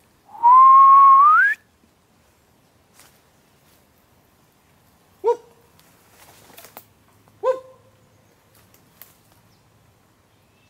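A person whistles once, loudly: a held note that steps up in pitch at the end. About four and six seconds later come two short, sharp calls, each with a brief ringing tail.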